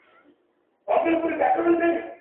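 Speech: after a short pause, one drawn-out phrase of about a second in a speaker's voice.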